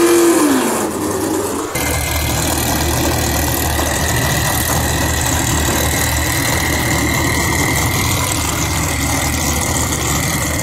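Turbocharged Hyundai 4G63 four-cylinder in a drag-race Fox-body Mustang held at high revs at the end of a burnout, its pitch falling as the revs come down in the first second. After a cut about two seconds in, the engine runs steadily at low revs with a steady high whine over it.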